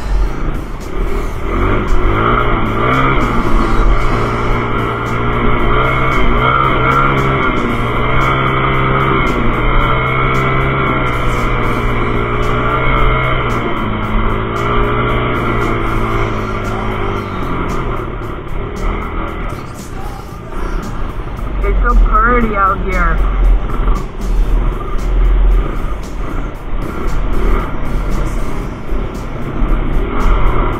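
Small off-road motorcycle engine running under way, its pitch holding steady and then stepping up and down with throttle and gear changes. Wind rumbles on the helmet-mounted microphone, heaviest in the second half, where the engine note fades back.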